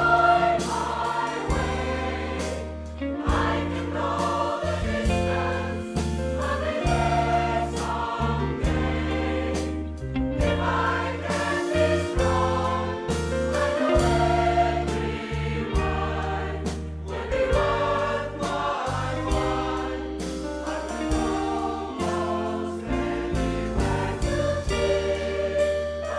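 A large mixed choir of men and women singing a Disney song in harmony over instrumental accompaniment, with a bass line changing note under the voices and a steady beat.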